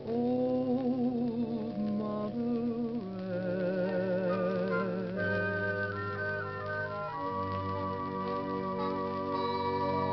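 1940s big band dance orchestra playing the closing bars of a ballad from a 78 rpm shellac record, the sound dull with no top end. Several held parts with vibrato move through chord changes, then settle on a long held final chord in the last few seconds.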